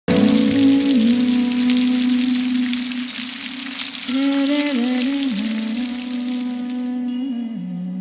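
Steady rain hiss with a slow, low melody line over it. The rain stops suddenly about seven seconds in, and the melody settles onto a lower held note.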